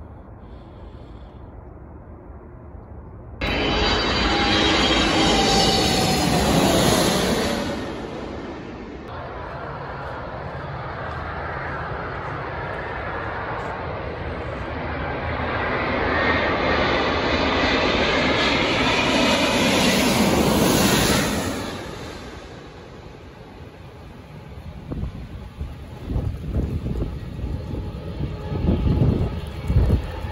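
Twin-engine jet airliner passing low overhead on approach to the runway: the engine noise starts abruptly a few seconds in, with a whine that falls in pitch as it passes, then swells again and dies away about 21 seconds in.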